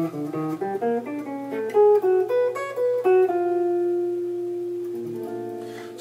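Hollow-body electric jazz guitar playing a single-note altered-scale line over a ii–V–I in B flat (C minor 7, F7 altered, B flat major 7). A quick run of eighth notes gives way about three seconds in to a long held note where the line resolves, and a few notes sound together near the end.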